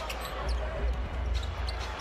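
Basketball being dribbled on a hardwood court, a few short bounces over a steady low arena rumble.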